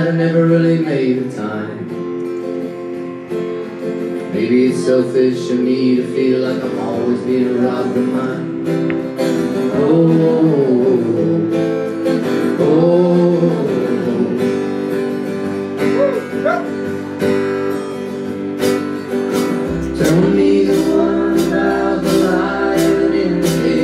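Live folk-rock song: acoustic guitar strummed with keyboard accompaniment while a man and a woman sing into their microphones. A deeper low part joins near the end.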